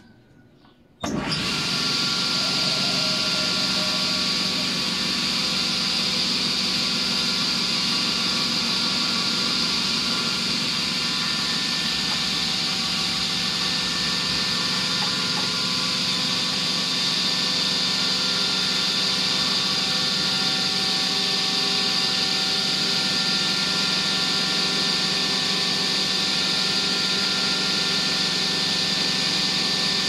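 Esse-Effe sliding-table circular saw switched on about a second in, its motor and blade then running steadily at speed.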